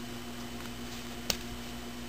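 A single sharp snip of diagonal cutters (dikes) cutting thin coax cable wire, about a second in, over a steady low background hum.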